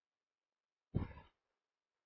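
Near silence broken once, about a second in, by a short breath sound from a person, like a sigh.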